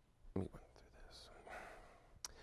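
Faint mouth and breath sounds from a man at a microphone: one brief voiced grunt about half a second in, then a soft exhale.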